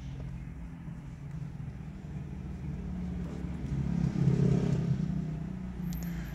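A vehicle engine running: a steady low hum that swells louder about four seconds in and then eases back.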